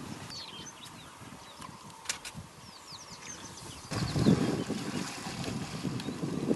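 Wind buffeting the microphone in uneven gusts, strongest over the last two seconds, with small birds giving short high chirps throughout.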